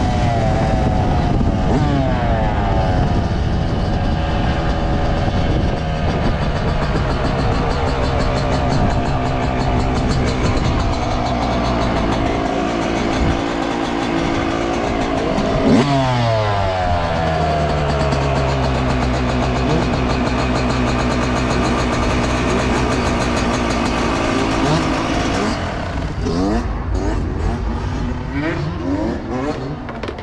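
2019 Yamaha YZ125 two-stroke dirt bike engine under way, its pitch rising and falling as it revs through the gears. About 16 seconds in the revs drop sharply and it runs low and steady. Near the end it runs quieter, with a few short blips.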